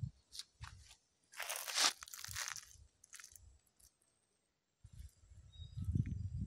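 Faint crunching of footsteps on dry leaves and soil: a few short crunches, then a longer scratchy crunch about a second and a half in. A low rumble starts near the end.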